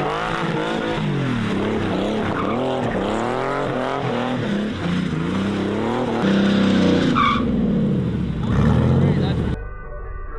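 Porsche 964's air-cooled flat-six revving up and down over and over as the car is driven hard on track, with a short tyre squeal about seven seconds in.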